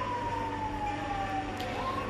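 A wailing siren, its single tone falling slowly in pitch and starting to rise again near the end.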